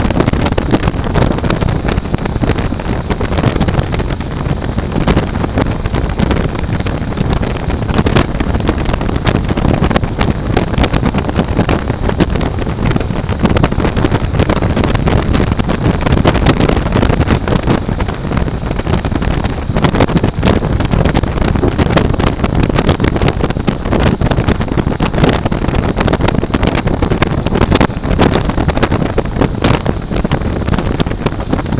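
Motorcycle riding at highway speed, about 85 km/h: loud, steady wind rush buffeting the camera's microphone over the bike's engine and road noise.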